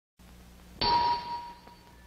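A single bright bell-like ding, struck sharply about a second in and ringing away over about a second, over a faint low hum.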